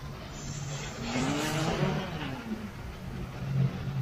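Road traffic on a wet street: a motor vehicle passes, its tyre hiss on the wet asphalt swelling and fading between about one and two and a half seconds in, over a steady low engine hum.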